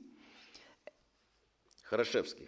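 A short pause in speech in a room: a faint breathy, whisper-like sound, a single small click about a second in, then near silence before speech starts again just before the end.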